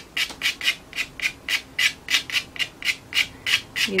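Quick, short strokes of pastel scratching across sanded pastel paper, about four to five a second, laying down short strokes of fur.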